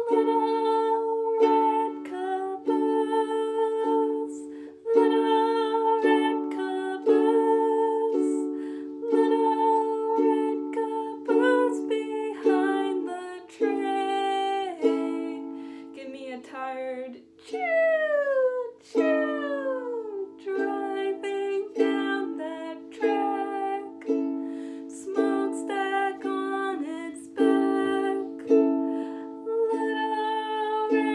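Ukulele strummed in a slow, steady chord pattern, with a woman's voice along with it. About two-thirds of the way through there is a stretch of sliding pitches.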